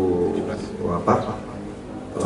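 A man's voice in a hesitation pause: a drawn-out, flat-pitched "uh" and a short sound about a second in, then a quieter gap before the next words.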